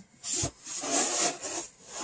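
Two scraping, rubbing strokes from a package box being handled, a short one followed by a longer one lasting nearly a second.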